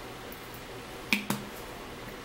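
Two sharp clicks about a fifth of a second apart, each with a brief ring, from handling a glass jar of apple cider vinegar water.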